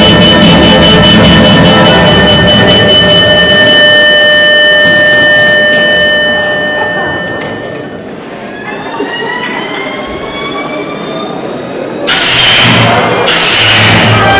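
Show music over the hall PA fading out, then a siren sound effect winding up in pitch and levelling off, followed by two loud noisy blasts near the end.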